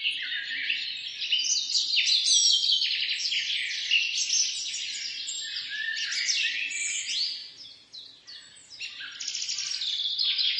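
Many small birds chirping and twittering at once in a dense, continuous chorus, dipping quieter about eight seconds in.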